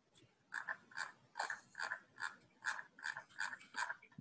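Computer keyboard keys pressed one at a time at an even pace, about two to three clicks a second, faint over the call audio.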